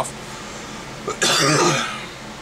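A man coughs once, a harsh burst about a second in that lasts about half a second.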